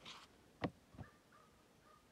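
Two short, light knocks as a tomato is set down on the plastic platform of a kitchen scale, in otherwise quiet surroundings.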